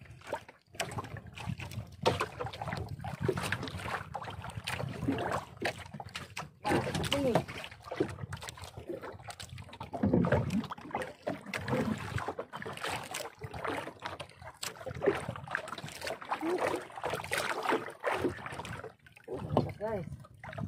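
Sea water slapping irregularly against the hull of a small outrigger fishing boat on choppy water.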